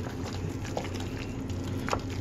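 Hands squishing and kneading tuna salad (canned tuna with Miracle Whip) in a plastic container: irregular wet squelches and small clicks, several a second, over a steady low hum.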